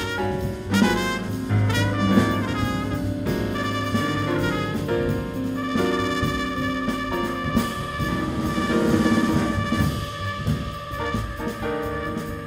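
Live jazz quintet playing: trumpet leads over piano, upright bass, drums and electric guitar. Quick runs of notes in the first half, then a long held note from about six seconds in.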